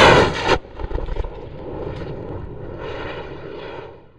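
A Cesaroni M2250 high-power rocket motor firing at liftoff: very loud for the first half second, then dropping to a steadier, fainter roar with crackling that fades near the end.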